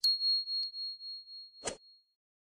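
Notification-bell 'ding' sound effect: one high, clear ding that rings on and fades with a pulsing waver. A faint tick comes about half a second in, and a short click near the end.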